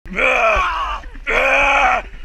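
A voice giving two long, strained yells, each close to a second, the second louder and held steady to its end.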